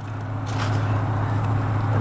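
A truck engine idling: a steady low hum with an even background noise.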